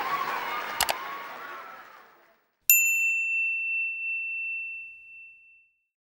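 The murmur of voices in the hall fades out. About two and a half seconds in, a single bright bell-like ding of a chime sound effect rings out and dies away over about three seconds.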